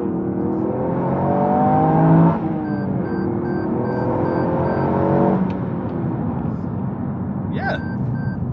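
Toyota GR Yaris's 1.6-litre turbocharged three-cylinder engine accelerating hard, heard from inside the cabin: the engine note rises steadily, dips at an upshift about two and a half seconds in, and rises again through the next gear. About five seconds in the engine note fades, leaving steady road and tyre noise.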